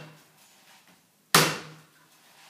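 A big kitchen knife hacking into the top of a young coconut: one sharp chop about a second in, with the fading tail of the previous chop at the start.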